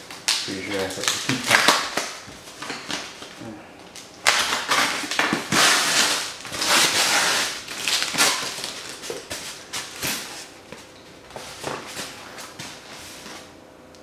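Clear plastic shipping bag crinkling and rustling as it is pulled open around a styrofoam cooler, with foam scraping now and then. The rustling is loudest in a long stretch starting about four seconds in.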